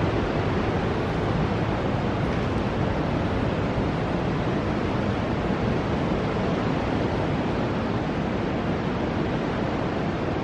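Ocean surf breaking along the shore, a steady rush of waves.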